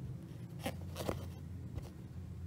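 Embroidery needle and cotton floss being drawn through 14-count Aida cloth, making three short scratchy rasps, the loudest about a second in, over a steady low hum.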